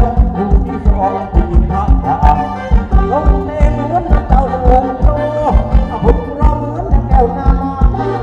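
Live Thai ramwong dance music from a band, with a heavy drum beat about twice a second and a wavering melody line over it.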